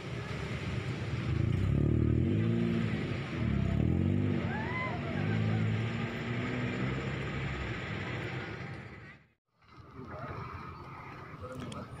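Cars driving past close by over a level crossing, their engine notes rising and falling in pitch as each one goes by. The sound cuts out briefly near the end.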